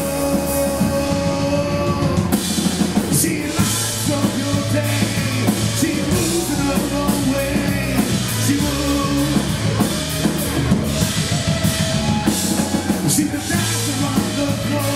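Live rock band playing an instrumental passage on two electric guitars, bass guitar and drum kit. A held note rings for about the first two seconds, then the cymbals come in more densely.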